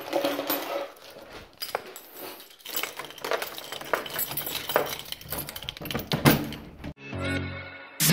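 A bunch of metal keys jingling and clinking as they are picked up, then the clicks of a key working a door lock. In the last second a steady musical tone comes in.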